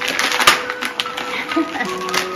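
Gift wrapping paper being torn and crumpled off a box by hand, a run of crackling rips with the loudest about half a second in. Background music plays underneath.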